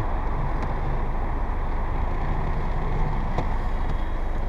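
Power soft top of a sixth-generation Chevrolet Camaro convertible closing: a steady mechanical whir of the roof mechanism over a low, even engine hum, with one faint click about three and a half seconds in.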